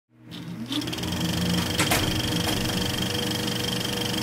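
Intro sound effect: a steady mechanical whirring buzz with a fast, even rattle, rising in pitch in its first second.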